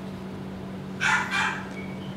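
A short animal cry about a second in, over a steady low hum.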